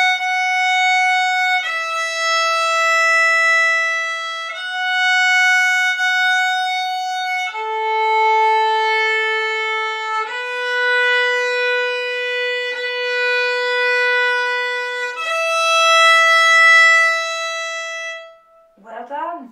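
Solo violin playing a slow melody of six long bowed notes, each held for one to five seconds and joined by clean bow changes, with one long low note in the middle before ending on a higher one.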